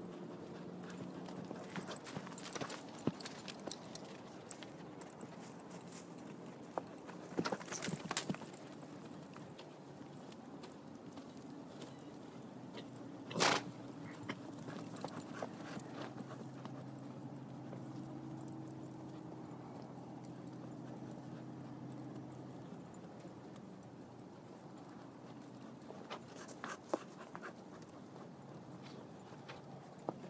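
A horse's hooves clopping and knocking irregularly as it steps about. There is a cluster of knocks about eight seconds in and one louder knock about thirteen seconds in.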